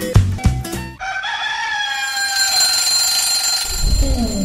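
A segue jingle: a few plucked guitar notes end about a second in. A long held call with a slightly falling pitch follows, like a rooster crow.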